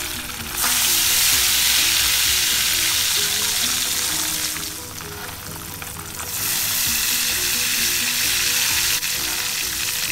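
Kalmas shallow-frying in hot oil in a pan, a steady sizzle that drops lower for about two seconds midway and then picks up again.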